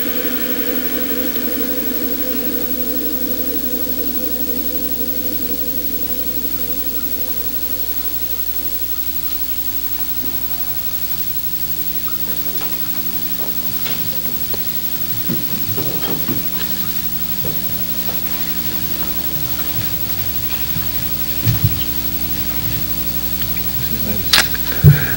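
Steady hiss with a low electrical hum from an old microphone and recording chain, with a few faint brief sounds in the middle and about 21 seconds in.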